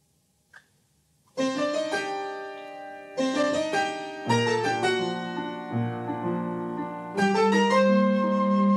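After a moment of near silence and a single faint click, a piano plays a slow series of five sustained chords, starting about a second and a half in. The later chords have a deep bass note under them.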